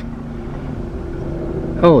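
A car's engine and road rumble, a steady low hum while driving slowly. A man's voice exclaims near the end.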